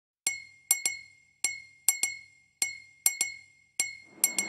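Glass clinks, each with a short ringing high tone, struck in a repeating rhythm of one clink then two quick ones. They make up the sparse percussion intro of a dance song.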